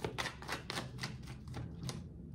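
Tarot deck being shuffled by hand: an irregular run of soft card clicks and slaps, several a second.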